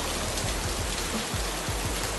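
Heavy rain pouring down, a steady even hiss.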